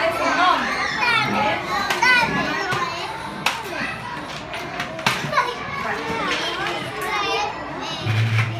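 A room full of young children chattering and calling out at once, many high voices overlapping, with two short sharp clicks about three and a half and five seconds in.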